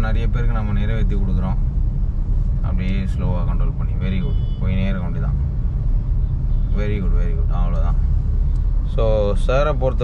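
Steady low rumble of a moving car heard from inside the cabin: engine and road noise while driving in traffic, with a man talking in short stretches over it.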